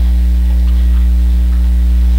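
Loud, steady electrical mains hum in the sound system's recording feed: a low, even hum with a few fainter, higher steady tones above it.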